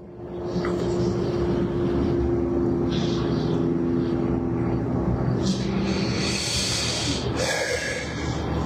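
A steady, low mechanical drone with a few held hum tones.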